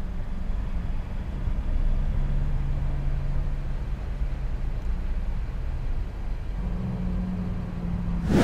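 Car engine running at idle, a steady low hum heard from inside the cabin.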